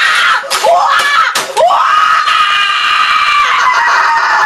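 A boy screaming in high, shrill yells, then one long drawn-out scream from about a second and a half in. A single sharp bang comes just before the long scream.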